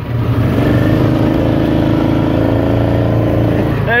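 Utility vehicle's engine running steadily as it drives along, a continuous even drone.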